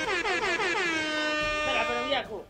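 A horn-like sound effect: one long tone that slides down in pitch over the first second, then holds steady until it cuts off.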